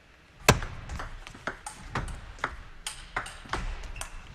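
Table tennis rally: the ball clicking off the rackets and the table, opening with the serve. The first click, about half a second in, is the loudest, and about a dozen quick ticks follow at an uneven pace.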